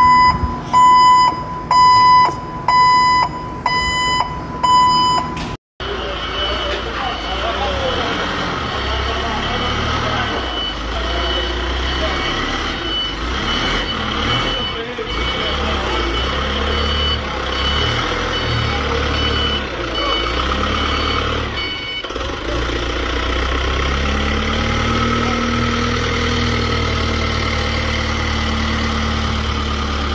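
For the first few seconds, a string of clean electronic beeps, about one a second. Then a forklift's engine runs and revs up and down as it drives and lifts, and its high warning beeper sounds about twice a second for several seconds in the middle.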